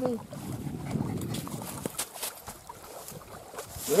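Wind buffeting the microphone as a low rumble that eases off after about two seconds, with a few sharp clicks around the middle.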